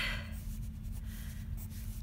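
Pencil scratching on sketchbook paper in a run of short strokes while sketching a small thumbnail.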